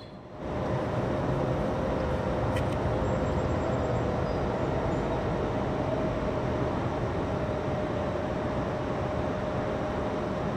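Steady outdoor background rumble with a faint steady hum running through it and no distinct events, apart from a couple of faint ticks about two and a half seconds in.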